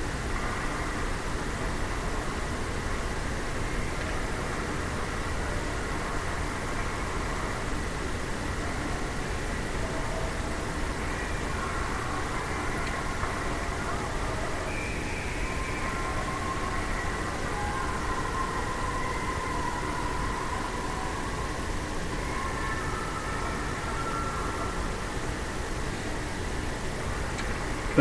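Steady ice-rink background: a constant low hum with faint, distant voices.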